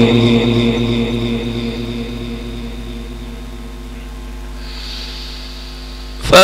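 The last held note of a man's Quran recitation through a loudspeaker system, dying away in its echo over the first few seconds and leaving a steady low hum from the sound system.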